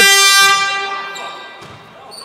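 A horn in the sports hall sounding one loud, steady note that fades away over about a second and a half.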